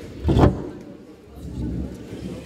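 One sharp, loud burst from a karate competitor performing her kata, about half a second in, echoing in a sports hall.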